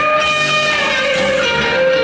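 Live rock band in an instrumental break, an electric guitar lead playing held notes that bend slightly in pitch over the rest of the band.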